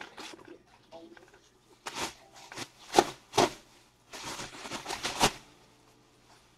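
Off-camera rustling and handling noises, likely packaging or paper being handled: a few short separate bursts around two and three seconds in, then a denser run of rustling near the end.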